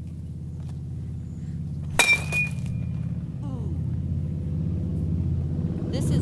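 A baseball bat strikes the back of a laptop's metal lid once, about two seconds in, with a sharp crack and a short metallic ring; the blow cracks the metal. A smaller knock follows, over a low engine hum that grows louder.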